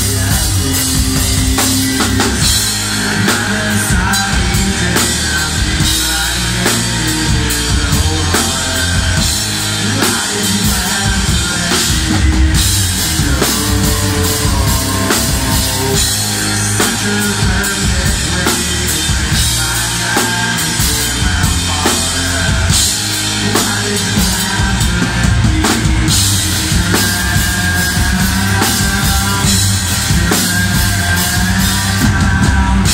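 Rock band playing live and loud, with a driving drum kit and electric guitars.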